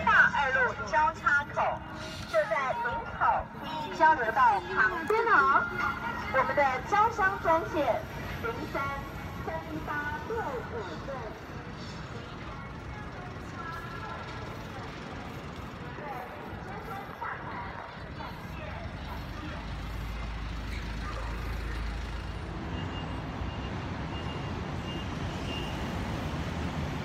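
Street ambience: voices for the first several seconds, then a steady hum of traffic, with the low rumble of a passing vehicle about twenty seconds in.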